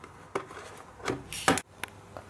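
A cardboard perfume box being handled and opened, with the glass bottle taken out: a few light taps and scrapes, the loudest about three-quarters of the way in.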